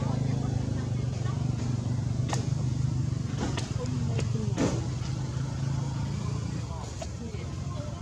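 A steady low engine hum runs under the whole stretch, with a few short squeaky calls and sharp clicks around the middle.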